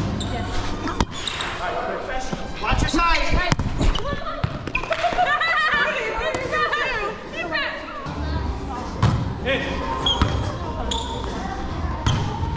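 Volleyball bouncing on the hardwood gym floor and being struck, a scattering of sharp thuds that echo in the large hall, over players' chatter.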